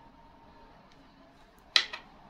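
Faint room tone, with one short sharp click near the end.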